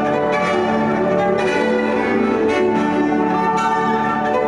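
Cello and grand piano playing a classical duo live, the cello bowing sustained notes over piano accompaniment.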